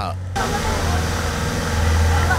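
Police water-cannon truck spraying: its engine gives a steady low rumble under the dense hiss of the water jet, which starts abruptly a moment in. Faint shouting voices sound behind it.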